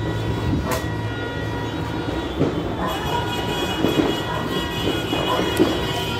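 Several horns hold steady tones together over a noisy background, with more horn tones joining about three seconds in. There is one sharp pop just under a second in.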